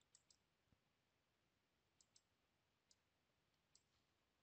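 Near silence broken by a few faint computer mouse clicks.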